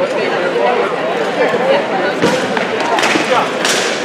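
Voices talking throughout, with three sharp knocks of blows landing on steel armour and a wooden shield, the first a little after two seconds in, then at about three seconds and just before the end.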